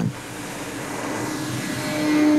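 Radio-controlled model airplane's propeller engine running at full throttle on its takeoff roll, a steady note that grows louder as the plane draws nearer.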